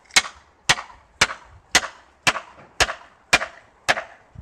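A hand axe striking wood in a steady rhythm: eight sharp, ringing cracks, about two blows a second.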